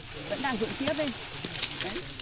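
Quiet speech from a second, more distant voice talking softly, with a few faint clicks.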